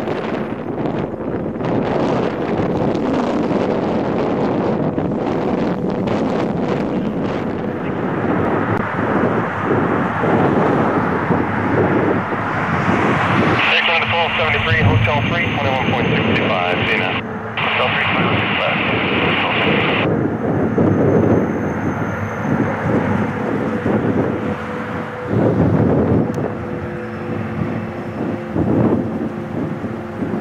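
Airbus A340 jet engines on the runway: a long, loud rumble of engine noise with wind buffeting the microphone as the four-engine airliner lands and rolls out. The sound changes abruptly about 14 seconds in, and near the end another A340's engines give steady tones as it rolls past.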